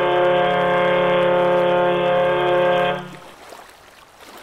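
One long, steady blast of the SS Badger car ferry's horn, a low chord that cuts off about three seconds in and leaves faint outdoor background noise.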